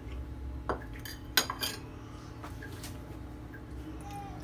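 Cutlery clinking against a small dessert plate a few times, the sharpest clink about a third of the way in, over a low steady hum.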